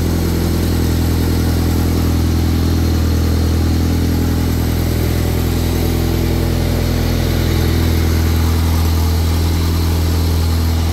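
Honda Accord's four-cylinder engine idling steadily on its first run after being reassembled.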